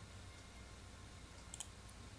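Faint room tone in a pause between speech, with a single short, faint click about one and a half seconds in.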